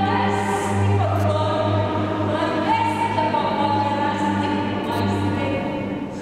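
Live music: a cello with a high, sustained melody line over a steady low drone.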